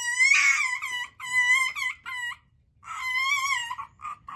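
Pet fox whining: a run of high-pitched, wavering cries in two bursts with a short pause between them. It is the fox's upset complaining just after a squabble with another fox.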